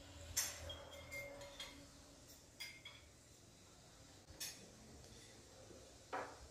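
Metal fork and knife clinking against a ceramic plate during a meal: about five light, separate clinks with a short ring, the sharpest about half a second in.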